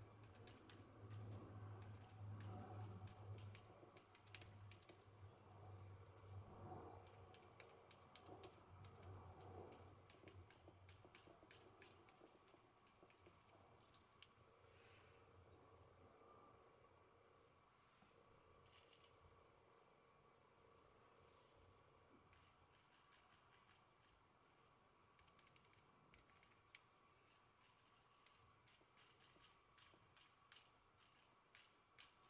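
Faint, rapid light taps of a foam spouncer being dabbed straight up and down, pouncing paint through a stencil onto paper. A low hum is there for about the first ten seconds, then fades.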